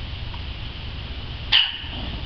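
A small dog gives one sharp, loud bark about a second and a half in, after a faint short yip near the start.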